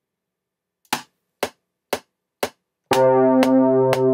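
DAW metronome count-in: four clicks half a second apart (120 BPM), after which a single sustained note from the Velvet VST software instrument enters just before the fourth second, with the metronome clicking on over it on every beat.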